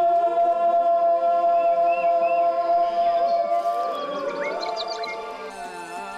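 Background music: long held notes that slide smoothly in pitch, one note held for about four seconds before the line glides downward.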